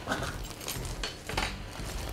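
Handling noise from plastic packaging, with several short, light metallic clinks of Allen keys shifting inside a small plastic zip bag as it is lifted out of a cardboard box.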